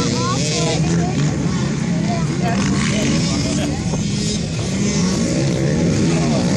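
Motocross dirt bikes' engines running on the track, the pitch rising and falling as the riders work the throttle.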